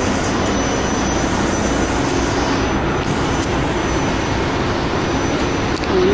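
Airport people-mover train running along its guideway, heard from inside the car: a steady running noise with a faint high whine.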